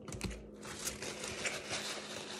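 Paper sandwich wrapper crinkling as it is crumpled in the hands: a dense run of small crackles from about half a second in, after a dull bump near the start.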